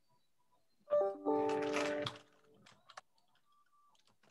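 Broken-up audio from a remote caller's connection on a video call: about a second in, a roughly one-second burst with several steady tones at once, then a few faint clicks.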